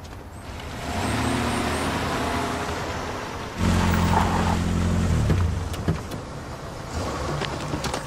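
Cars driving up a rough gravel track, the engine sound building as they approach. A few seconds in comes a louder, closer engine as a Land Rover Discovery SUV rolls up, easing off again as it stops.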